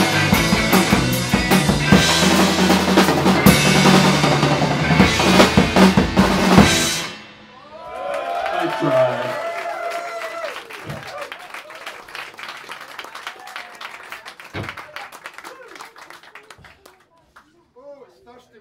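A live rock band on electric guitars, bass and drum kit plays the end of a song and stops abruptly about seven seconds in. Then comes audience clapping and cheering, which fades away over the next ten seconds.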